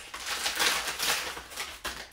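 Plastic packaging crinkling and rustling as it is torn open and a baby bottle is pulled out, with a sharp click near the end.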